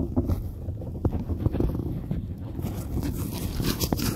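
Low rumbling wind noise on a hand-held phone's microphone, with a few light knocks from handling the phone.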